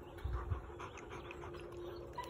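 German Shepherd panting softly, with a few low bumps about half a second in.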